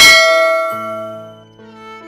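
A single bright bell-like ding, the notification-bell sound effect of a subscribe animation, struck at the start and ringing out as it fades over about a second and a half. Soft background music plays underneath.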